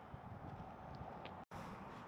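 Faint outdoor background noise: a low rumble with a light hiss, broken by a brief dropout about one and a half seconds in.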